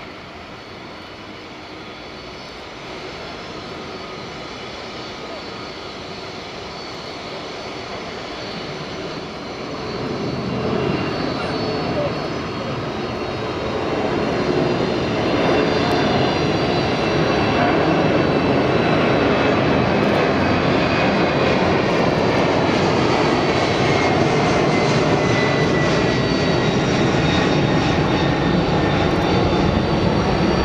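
Boeing 747-400 jet engines during taxi: a high whine over a steady rumble, growing louder about ten seconds in and then holding steady, with the whine falling slightly in pitch.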